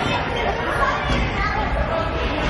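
Several voices chattering and calling out at once over a general murmur, as players, coaches and spectators shout during a futsal match.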